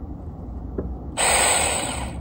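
Saker mini cordless electric chainsaw started about a second in and run briefly, its motor and chain giving a loud high-pitched whine. It runs only with the side safety button pressed together with the trigger.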